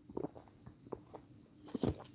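A person gulping grape juice from a plastic bottle: a few separate swallows, the last and loudest just before the end, over a faint steady hum.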